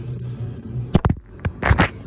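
A few sharp knocks and scraping rubs close to the microphone, bunched in the second half and loudest near the end. Before them a low steady hum stops a little before halfway.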